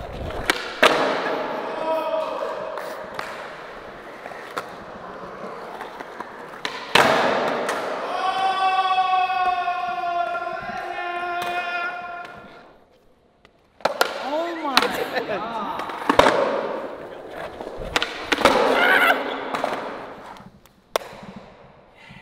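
Skateboard on a concrete floor: the tail pops, the wheels roll and the board clacks down on landings in a string of sharp knocks. A long drawn-out shout from the skaters comes about eight seconds in.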